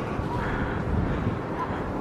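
Wind rumbling on the microphone over a steady hum of city street noise.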